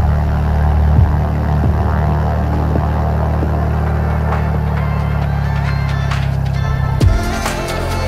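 Single-engine light aircraft's engine and propeller droning steadily as it rolls over a grass runway, with music coming in; a beat with heavy drum hits takes over about seven seconds in.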